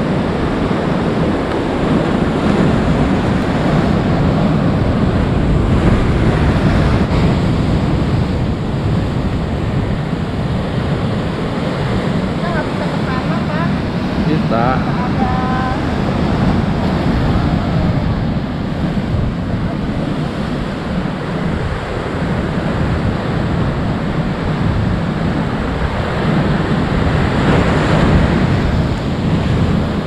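Heavy sea surf breaking on rocks and washing against a concrete seawall: a loud, continuous rushing of waves that swells with the bigger sets, about six seconds in and again near the end, with wind buffeting the microphone.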